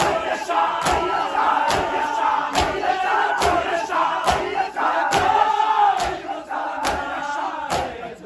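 Men doing matam: bare hands slapping bare chests in unison, one sharp strike a little more than once a second, over a crowd of men's voices chanting the noha in time with the beat.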